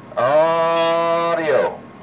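A man's voice holding one long, steady "aaah" into a CB radio's microphone for about a second and a half: a sustained test tone to drive the transmitter's modulation for the oscilloscope.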